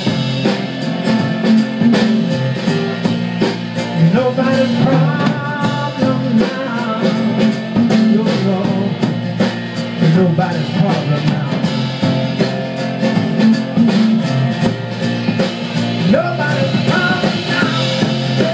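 Live rock-blues band playing a song: strummed acoustic guitar, electric bass and drum kit keeping a steady beat, with a voice singing at times over the instruments.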